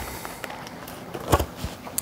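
Plastic lid being pulled off a small tub of bait worms, with a couple of sharp clicks a little past halfway amid faint handling rustle.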